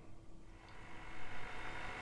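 Faint room tone, then from about a second in a steady low electrical hum with a thin high whine.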